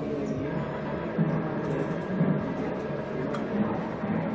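Slot machine game music and sound effects playing as the bonus feature begins, over a steady low background din.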